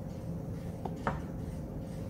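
Steady low background hum, with two faint light clicks about a second in as a stoppered glass volumetric flask is handled and mixed.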